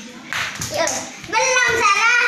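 Young children at play: a few sharp smacks in the first second, then a child's high-pitched voice calling out loudly through the second half.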